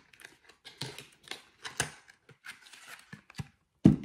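Cosmetic product packaging being handled: a series of light rustles and clicks of cardboard and plastic, then a louder thump near the end as something is set down.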